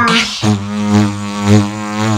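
A beatboxer's held low vocal bass drone, buzzing with a dense stack of overtones like a didgeridoo. It sets in about half a second in, holds one steady pitch for over a second and a half, and swells in loudness a couple of times.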